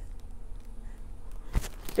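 Hands pressing and smoothing a large diamond painting canvas on a table: faint rustling, with a single sharp knock about one and a half seconds in.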